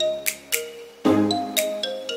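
Background music with a steady beat: sharp percussion hits over held bass notes, with short high tones.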